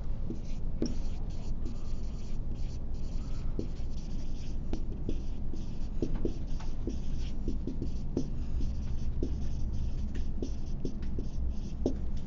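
Writing by hand: a run of many short, separate strokes, over a steady low room hum.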